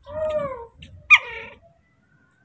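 Baby macaque calling twice: a short call that rises and falls in pitch near the start, then a louder, sharper squeak about a second in that drops steeply in pitch.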